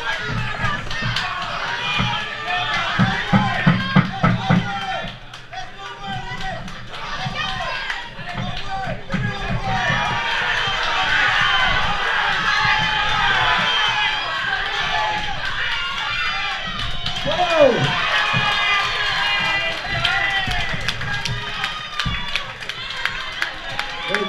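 Boxing crowd shouting and cheering the boxers on without a break, many voices at once, with a few sharp thuds about three to four seconds in.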